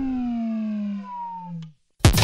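A long, slowly falling tone slides down in pitch for nearly two seconds as someone trips and falls, a cartoon-style falling sound. It cuts off suddenly just before the landing.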